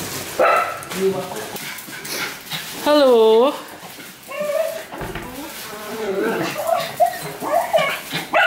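Small dogs whining and yipping on and off, with one loud drawn-out whine about three seconds in that dips and rises in pitch.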